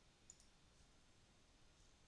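Near silence with one faint computer mouse click, a quick double tick about a third of a second in.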